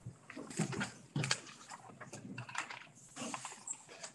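A chair being pulled out and moved, with papers handled, as a person sits down at a table. The sounds come as a few short, irregular scrapes and rustles, the loudest just over a second in.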